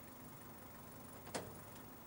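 A single sharp click of a car's door latch as the driver's door is opened, over a faint steady hum.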